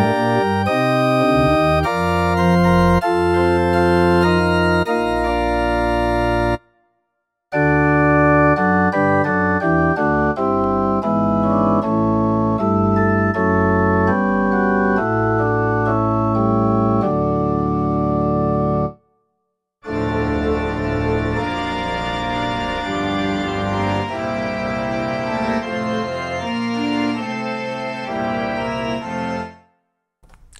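Roland RP102 digital piano playing its organ voices, pipe organ among them: held chords in three passages. The sound cuts off abruptly for about a second twice, about seven seconds in and again near nineteen seconds, as the voice changes.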